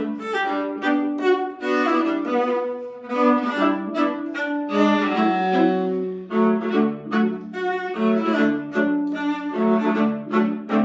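A viola and a second bowed string instrument playing a Christmas medley as a two-part duet, a quick run of short bowed notes with the lower part moving under the melody.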